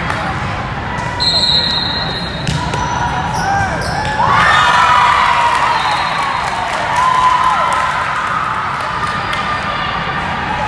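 Volleyball in a large, echoing gym: balls thud on the floor and against hands, and a referee's whistle sounds for about a second a little over a second in. Players' voices then rise in loud shouts and cheers about four seconds in, and again near seven seconds.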